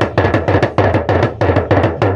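Hourglass talking drum beaten rapidly with a curved stick, about eight strokes a second over a low drumhead tone.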